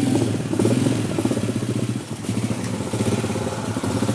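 A small vehicle engine idling close by, a steady low running note with a rapid even pulse and a brief dip about two seconds in.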